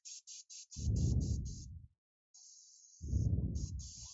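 Airbrush spraying white paint in two short blasts of about a second each, with a steady high hiss of air running on.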